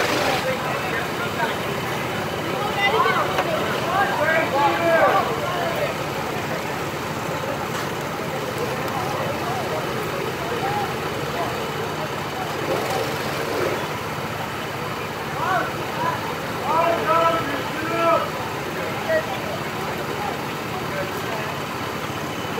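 Steady drone of go-karts running on the track. Voices call out twice over it, once about three seconds in and again near the middle.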